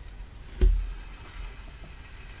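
A single short thump a little over half a second in, from the card panel and paper being handled while hand-stitching with needle and thread; otherwise only faint paper and thread handling.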